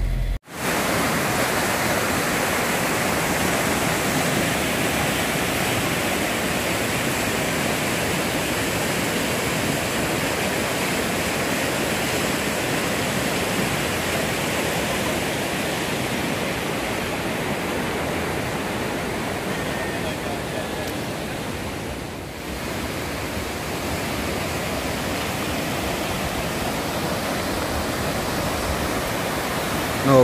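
A river in flood, brown floodwater rushing fast and high past a bridge: a steady, loud rush of water, easing briefly about three-quarters of the way through.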